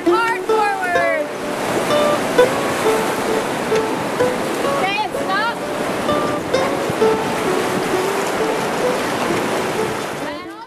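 Steady rush of whitewater through a Class 4 rapid, heard from aboard a raft running it. Music with short held notes plays over the water.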